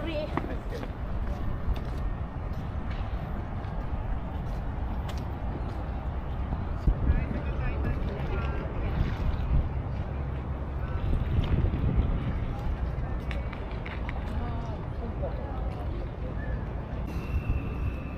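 Outdoor walking ambience: a steady low wind rumble on the microphone, with passers-by talking now and then.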